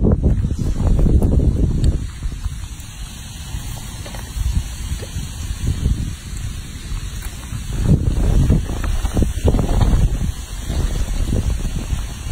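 Wind noise on the microphone: a low rumble that comes in gusts, loudest in the first two seconds and again from about eight to ten seconds in.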